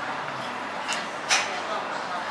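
Restaurant dining-room hubbub, a steady background of other diners' voices, with two short sharp clicks about a second in, the second the louder.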